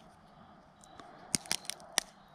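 Handling of plastic glow sticks: a quick run of four or five short, sharp clicks over the second half, as the light sticks are handled.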